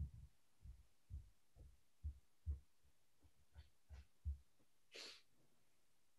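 Near silence: room tone with a string of faint, low, soft thumps every half second or so, and a short hiss about five seconds in.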